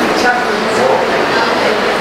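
A man's voice lecturing in an echoing room over a steady background noise.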